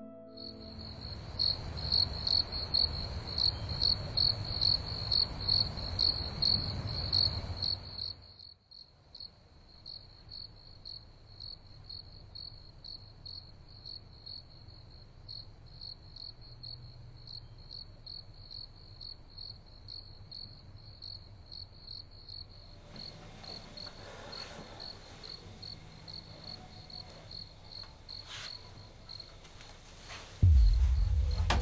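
Crickets chirping in a steady, even rhythm at one high pitch, a night ambience. A low rumbling background noise sits under them for the first eight seconds or so and then drops away, leaving the chirping on its own.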